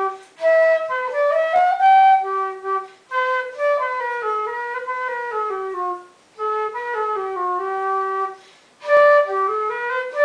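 Solo flute playing a minuet melody in short phrases, each separated by a brief pause.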